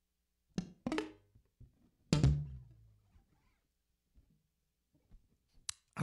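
Handling noise from an electric-acoustic guitar: two quick knocks, then a louder thump that sets a low ringing tone going for about a second, and a sharp click near the end.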